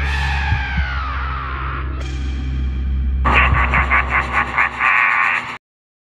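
Cartoon soundtrack music and sound effects over a steady low drone. A loud sound falls in pitch over about two seconds, then a rapid pulsing of about five beats a second runs until it cuts off suddenly, about half a second before the end.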